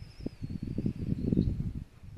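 Air buffeting a phone's microphone, a low choppy rumble that swells and fades over a second and a half, with a faint thin high wavering tone above it.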